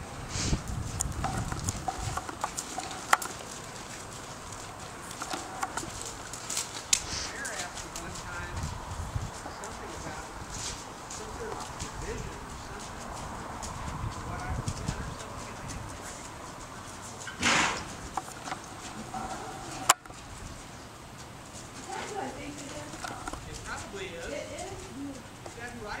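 Horse's hoofbeats thudding on sand arena footing as it trots past, with a brief loud burst of noise about two-thirds of the way through.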